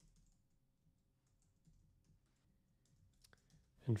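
Faint computer keyboard typing: irregular, quiet keystrokes, with one sharper click a little after three seconds.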